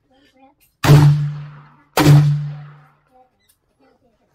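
Two loud gunshots about a second apart at a covered rifle range, each with a ringing tail that dies away over about a second.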